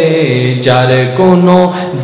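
A man's voice chanting the sermon in long, held melodic notes through microphones, in the sung delivery of a Bengali waz. The pitch drops low about a quarter second in and climbs back up a little after one second.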